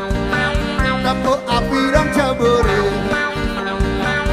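Live band playing an instrumental passage without singing, with drums keeping a steady beat under bass and melodic instruments.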